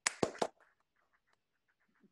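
A quick cluster of about three sharp clicks in the first half second, followed by a few faint ticks.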